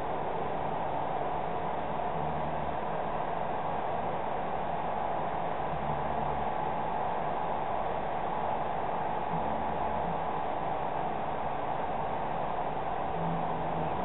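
Steady background hiss with a faint, even hum, unchanging throughout; no distinct events.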